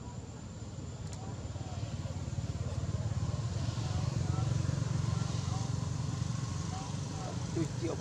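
Low rumble of a motor vehicle's engine running close by, swelling to its loudest around the middle and easing slightly after, with faint voices in the background.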